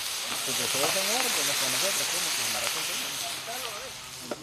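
Chopped meat and tortillas sizzling on a hot flat steel griddle: a steady hiss that eases slightly toward the end.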